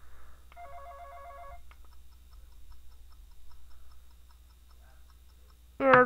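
Toy phone's electronic sound effects through its small speaker: a short electronic ring tone about half a second in, lasting about a second, then a faint tick-tock clock sound of quick, even ticks for about three seconds.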